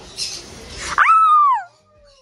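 A loud animal call: about a second of harsh, hissing noise, then a clear cry that holds its pitch briefly and falls away, lasting under a second.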